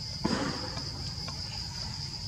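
Steady high-pitched drone of forest insects. About a quarter second in, a short, sharp noise rises above it and is the loudest sound, followed by a couple of faint ticks.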